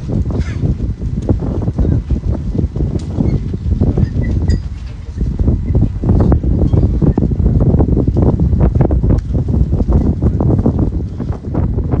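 Wind buffeting a phone's microphone: a loud, irregular low rumble with rapid flutters.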